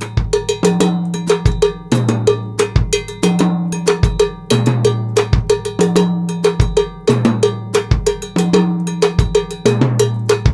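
Drum kit playing a mambo groove built on a steady, fast cowbell pattern, with regular bass drum strokes and low held notes repeating underneath in a cycle of a few seconds.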